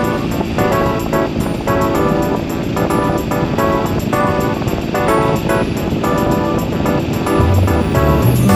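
Background music: short chords repeated in a steady rhythm, over a low continuous rumble of vehicle noise.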